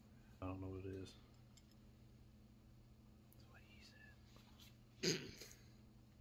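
Faint, unclear vocal sounds: a short hummed syllable about half a second in, some whispered, half-voiced muttering, and a loud short noisy burst about five seconds in, over a steady low hum.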